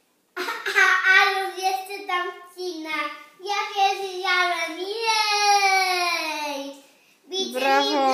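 A young child singing in a high voice, drawing out long notes that slide downward, stopping about a second before the end.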